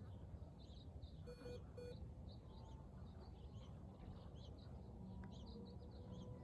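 Faint small birds chirping in short, repeated calls over a low outdoor rumble, with two short electronic beeps about a second and a half in.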